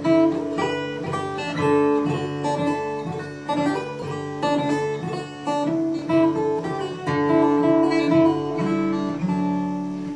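Acoustic guitar in DADGAD tuning played fingerstyle: plucked melody notes ring over sustained open-string drones, giving a modal, bagpipe-like sound.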